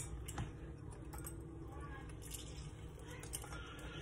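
A lime half being squeezed in a hand-held citrus press: a sharp click right at the start, then only faint squeezing sounds.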